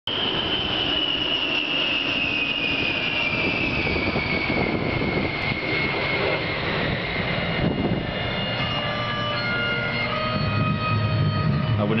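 Two A-10C Thunderbolt II jets flying past, their TF34 turbofan engines giving a high whine over a broad rumble. The whine falls slowly in pitch as the pair passes.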